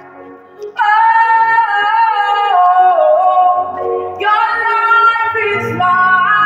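A female voice singing a slow worship song without clear words. About a second in she holds one long wavering note that steps down in pitch, then starts a new phrase past the middle.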